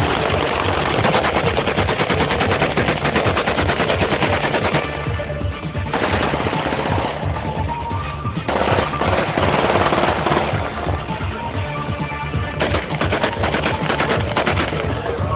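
Celebratory gunfire into the air: rapid automatic fire in long bursts with short pauses between, over music.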